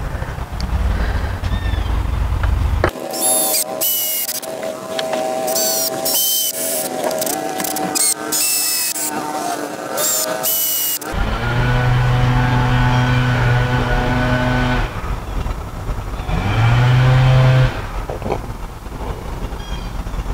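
Cordless drill driving screws down through a deck top rail into the beam below. After several seconds of sharp clicks and rattles, the motor runs with a steady hum for about four seconds, then again briefly.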